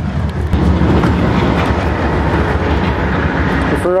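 Loud steady rumble of passing motor traffic, swelling about half a second in; the roar is heaviest in the low range.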